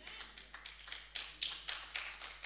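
Scattered, irregular hand claps from a few people in a congregation, about five or six a second, fairly quiet.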